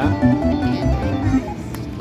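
Slot machine music: a short tune whose notes step up and down in pitch through the first second and a half, over a low casino rumble.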